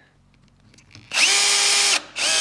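Cordless drill-driver driving a screw through a small wooden disc into a wooden cutting board: the motor spins up about a second in, runs steadily for under a second and stops.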